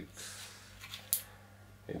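Brief crisp click about halfway through as a brittle, heat-cracked piece of stator winding insulation is handled in the fingers, over a steady low hum.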